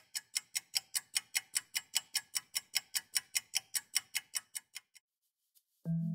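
Mechanical watch ticking steadily, about five crisp ticks a second, stopping about five seconds in. Music begins just before the end.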